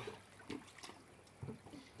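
Faint water lapping and small splashes in a swimming pool around people moving in the water, with a few soft splashes about half a second in and near the end.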